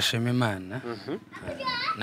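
A man speaking into a microphone, then a brief high-pitched voice, like a child's, about one and a half seconds in.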